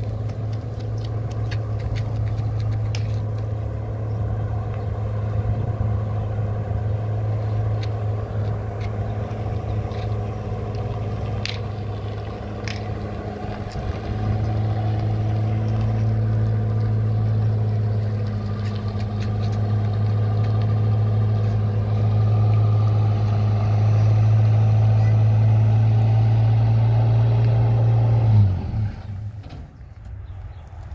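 Pickup truck engine running steadily at a fast idle, growing louder about halfway through, then shut off abruptly near the end. A couple of sharp clicks sound around the middle.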